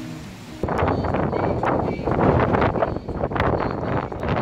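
Strong wind blowing on the phone's microphone, loud and gusty, starting suddenly about half a second in.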